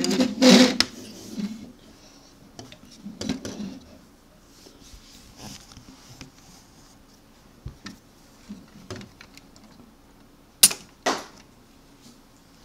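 Plastic knocks and rattles from a Lego ship being handled on a tabletop, with a loud clatter at the start and two sharp snaps near the end, the sound of its button-triggered missile launchers being fired.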